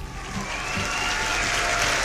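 Crowd applause that swells in over the first half-second and then holds steady.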